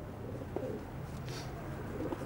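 Racing pigeons cooing faintly in the loft, with a brief soft rustle about a second in.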